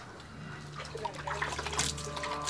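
Water splashing and dripping on a wet boat deck, in short scattered bursts. A low, steady music drone comes in about half a second in.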